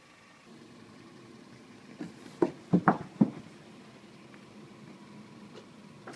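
A faint steady background with a quick run of four or five short knocks and thumps about two to three seconds in, the sound of people moving and handling things at an open car door.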